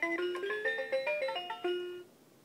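Electronic farm toy playing a short electronic melody from its speaker: a quick run of single notes stepping up and down, which stops abruptly at the end.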